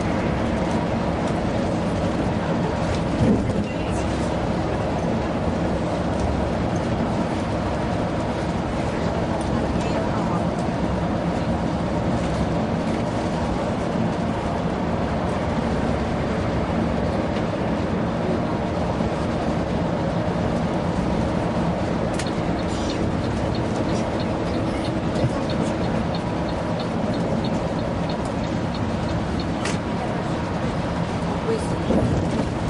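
Steady engine drone and tyre noise heard inside a tour coach cruising at motorway speed. Near the end there is a faint regular ticking, about two ticks a second.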